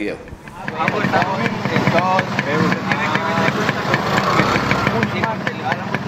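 Several people talking over one another, with an engine idling steadily underneath.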